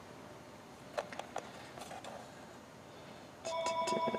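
Faint room tone with a few soft clicks about a second in, then a steady electronic ringing tone at several fixed pitches starting near the end.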